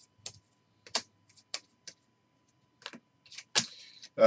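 A stack of football trading cards being thumbed through by hand, one card at a time. Each card snaps off the pile with a sharp click, about seven or eight in all at uneven intervals, the loudest near the end.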